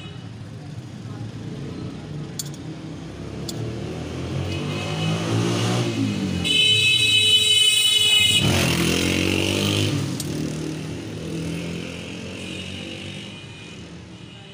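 A motor vehicle passing close by on the street. Its engine rises in pitch as it approaches and is loudest for a few seconds in the middle, with a high whine. It then drops in pitch and fades as it moves away.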